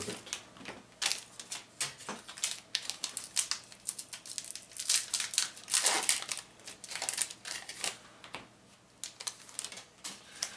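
Baseball card pack wrappers torn open and crinkled by hand, with the cards slid out: irregular crackles and light clicks, loudest around five to six seconds in.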